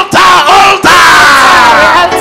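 A man's voice shouting a fervent prayer very loudly into a microphone, with short shouted bursts and then one long cry that slides downward in pitch.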